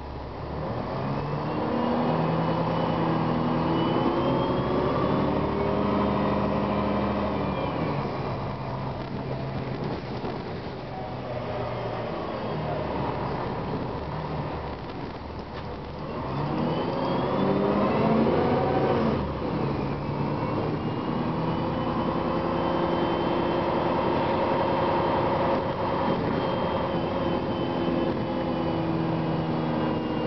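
Cummins ISM diesel engine of a Gillig Advantage transit bus, heard from inside the passenger cabin. The bus pulls away and its engine pitch climbs for several seconds and levels off, then eases. It climbs again past halfway, with an abrupt change as the Voith automatic transmission shifts, and then runs steadily.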